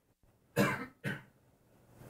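A man coughing twice: a longer cough about half a second in, then a short one about a second in.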